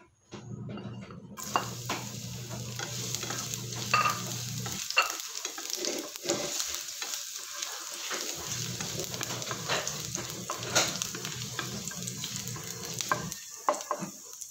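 Minced garlic sizzling in hot oil in a nonstick frying pan, starting suddenly about a second and a half in, while a plastic spatula stirs it with frequent scrapes and light taps against the pan.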